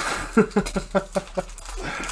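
A man laughing in a quick run of short breathy bursts, about five a second, with the crinkle of a foil trading-card pack wrapper being handled at the start.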